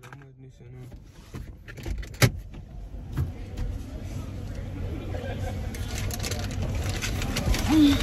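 Car passenger door opening with a sharp latch click about two seconds in, then rustling and small clicks as someone climbs into the seat, over a steady noise that grows louder.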